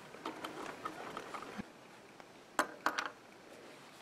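Hands taking a sock in a metal stocking darner frame out from under the needle of a Singer 15K treadle sewing machine: faint handling sounds, then a few sharp clicks about two and a half to three seconds in.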